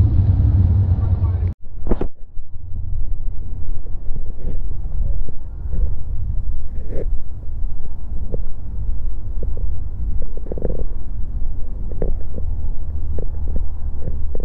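A steady low rumble, cut off briefly about one and a half seconds in, with faint distant voices and small clicks over it.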